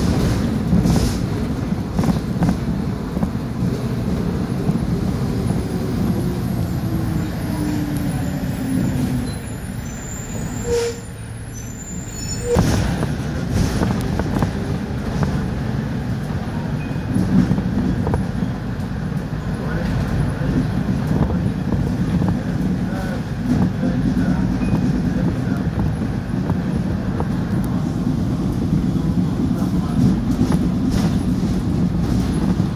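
City bus engine and road noise heard from inside the cabin while riding. A falling whine as the bus slows, a quieter spell of a couple of seconds, a sudden sharp burst about twelve seconds in, then the engine rumble builds again as it pulls on.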